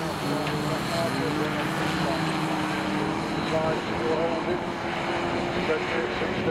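Engines of junior saloon autograss cars racing on a dirt track, one engine's note climbing steadily as it accelerates away down the straight.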